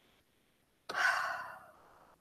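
A woman's audible breath into a close microphone: one rushing intake of air about a second in, fading away within a second, with silence around it.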